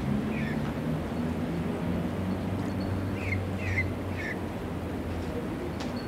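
A bird calling in two quick runs of three short falling chirps, one right at the start and one about three seconds in, over a low steady hum.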